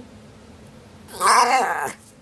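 A Norwich Terrier "talking": one loud vocal call, wavering up and down in pitch, starting about a second in and lasting under a second. It is the dog's way of asking for its lunch.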